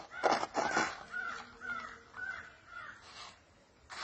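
A crow cawing four times, the calls about half a second apart, after a few sharp knocks in the first second.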